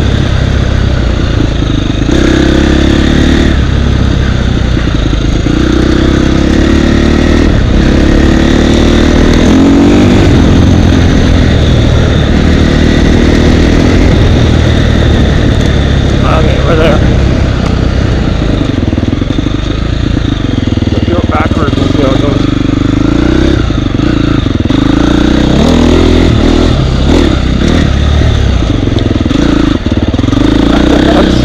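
Husqvarna dirt bike engine revving up and down with the throttle while riding rough single track, with a few sharp knocks around the middle.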